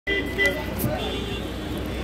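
Voices talking in the background over a steady low rumble of outdoor street noise.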